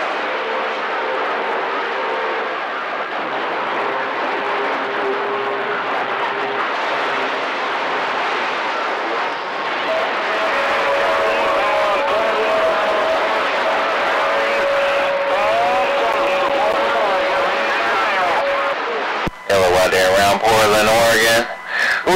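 CB radio receiver putting out steady hiss and static, with faint steady heterodyne whistles from overlapping carriers and garbled distant voices buried in the noise: a crowded, noisy band open to long-distance skip. A clear voice transmission breaks through near the end.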